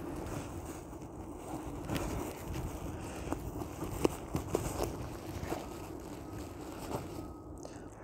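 Cut plastic ladder-lock buckle being wiggled out of nylon webbing loops by hand, with a few small clicks, over a low rumble of wind on the microphone.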